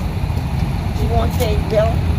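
A steady low rumble with a person's voice heard briefly about a second in.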